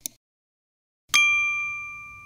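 A short click, then about a second in a bell-like ding sound effect that rings on and slowly fades: the notification-bell chime of a YouTube subscribe-button animation.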